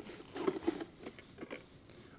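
Newborn baby's small mouth noises: a quick run of smacks and little grunts about half a second in, then a few fainter clicks.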